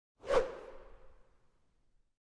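A single whoosh sound effect for an animated logo intro, rising sharply just after the start and trailing off over about a second with a faint lingering ring.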